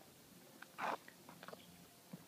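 Faint footsteps and handling noise as the camera is carried, with a few small clicks and one louder rustle just before a second in.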